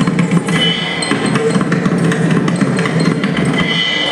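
Live Carnatic dance accompaniment: a mridangam playing a quick run of strokes over a steady low melodic line, with a high held note coming in about half a second in and again near the end.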